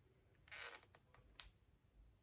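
Near silence, with a faint brief rustle about half a second in and a light click a little later, as hands handle an eyeshadow palette and rub a swatch on the skin.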